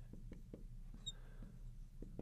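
Faint tapping and scratching of a marker writing on a glass lightboard, with one brief high squeak of the marker tip about a second in.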